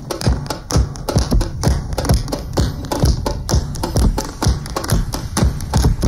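Folk band playing an instrumental passage on banjo, acoustic guitar, double bass and bass drum, with a strong, steady beat of percussive strokes a few times a second.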